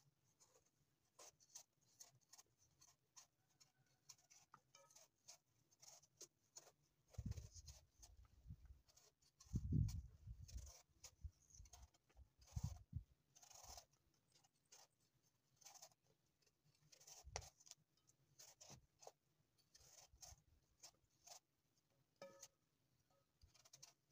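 Kitchen knife cutting through apple peel: a run of faint, short, crisp cuts and scrapes. A few low thumps come in the middle.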